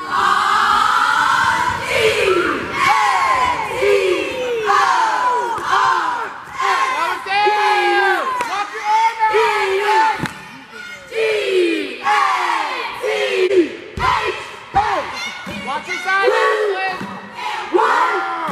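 High school cheer squad shouting a crowd-leading cheer in unison, many voices yelling chanted calls without a break. A few sharp thumps cut through, the clearest about two-thirds of the way in.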